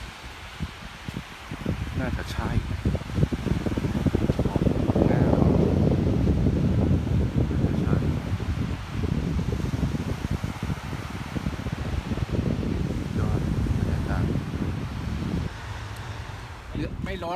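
Wind buffeting the phone's microphone in gusts: a low, fluttering rumble that swells a couple of seconds in and is strongest for a few seconds after that. Faint voices come through here and there.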